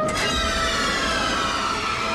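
Elevator sound effect: a sharp clang, then a long metallic whine made of many tones that slide slowly downward in pitch.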